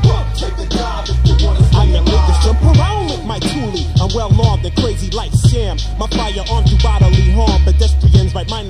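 Hip hop track: a vocal line over a beat, with deep held bass notes and regular hard drum hits.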